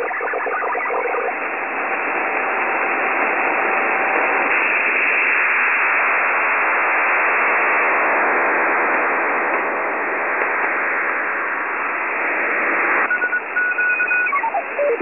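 Radio static: a steady hiss, with a faint steady tone for the first few seconds and pulsing beeps coming in about a second before the end.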